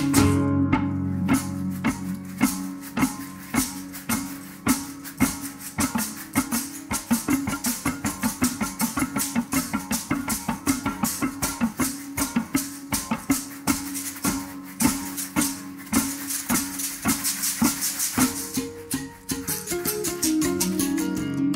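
A sextet of berimbaus playing together: the steel strings struck with sticks in quick, even interlocking strokes, with the caxixi basket rattles shaken along and a sustained low ringing beneath.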